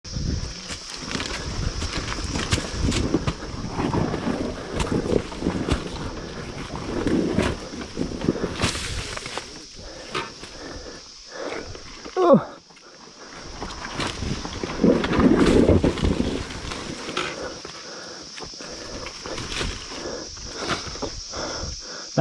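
Off-road dirt bike engine at low, uneven revs as it crawls over rock, with frequent knocks and clatter from the bike. About halfway, a falling whine drops to a sharp loud knock, followed by a brief lull.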